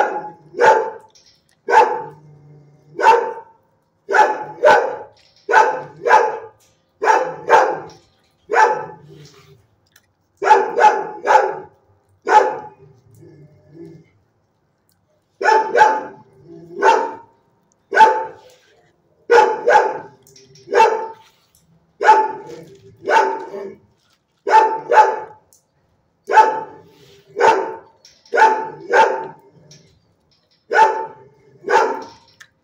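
Dog barking repeatedly in a shelter kennel, about a bark a second, often in pairs, with a pause of about three seconds midway.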